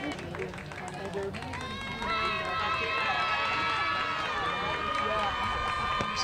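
Softball players in a dugout chanting a cheer and clapping, breaking into one long drawn-out chanted note from about two seconds in.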